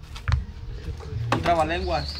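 A woman's voice speaking, starting a little past halfway, over low steady background noise with a few faint knocks early on.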